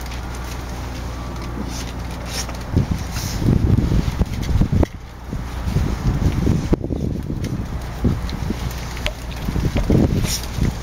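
Wind and handling noise on the microphone: a steady low rumble that turns into irregular gusty buffeting about three seconds in, with a few light clicks.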